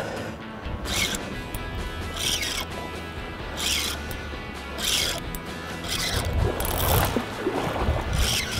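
Background music with a steady low hum. Over it come about six short zipping rasps, a little over a second apart, from a spinning reel working against a hooked bluefish.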